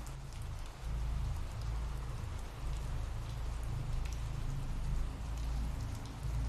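Ambient rain sound effect: steady rainfall with a low rumble underneath.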